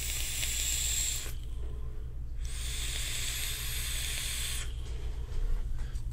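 Vaping on a dual-18650 box mod topped with a Tugboat V2 dripping atomizer: hissing of air and vapour drawn through the atomizer and breathed out. The hiss comes in two stretches with a short pause between, the second longer.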